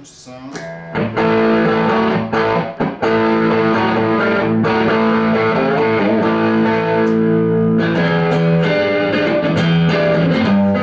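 Stratocaster-style electric guitar played through an amplifier: a few quiet notes, then from about a second in loud, sustained chords ringing out continuously.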